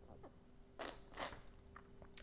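Near silence: faint room tone with a low steady hum and two brief, soft noises about a second in.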